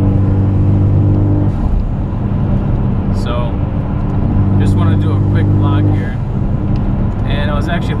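Ford Focus ST's turbocharged four-cylinder engine heard inside the cabin at highway cruise: a steady low drone over tyre and road noise, which fades briefly about a second and a half in and again near six seconds.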